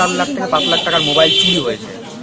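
A man speaking to camera, with a high, steady buzzing tone behind his voice from about half a second in until near the end.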